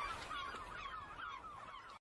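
Bird chirps left alone at the tail of a lofi hip hop track: rapid short chirps, several a second, fading away and cutting off at the end.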